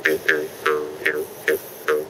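Bamboo jaw harp being plucked in a steady rhythm of about three twangs a second. Each twang has a low buzzing drone and a higher ringing overtone that changes pitch from stroke to stroke as the player's mouth shapes it.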